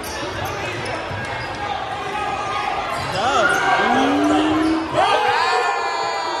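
A basketball bounces on a hardwood gym floor amid crowd chatter in a large echoing hall. From about three seconds in, spectators shout and whoop with rising, held calls as a player drives to the basket.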